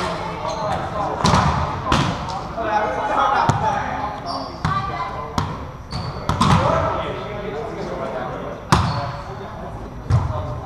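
Indoor volleyball rally with a string of sharp smacks as hands strike the ball and the ball hits the hardwood floor. The loudest smack comes near the end, and each one echoes through the large gym. Short high sneaker squeaks and players' voices run between the hits.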